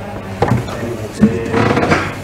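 Knocks and handling noise picked up close on a cluster of desk microphones as a person sits down at them, with two sharp bumps, one about half a second in and one past the one-second mark. Underneath are a steady hum and indistinct voices.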